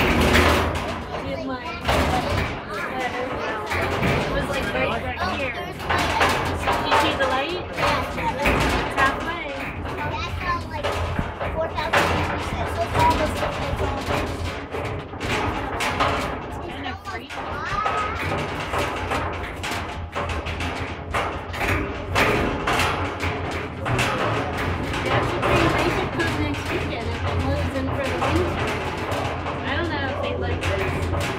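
Mine hoist cage rattling and knocking continuously as it is hoisted up the shaft, over a steady low rumble.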